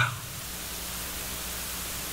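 Steady hiss with a faint low hum, the background noise of the sermon's sound recording, with no other sound standing out.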